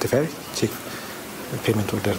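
A man speaking in Amharic, talking steadily in an interview.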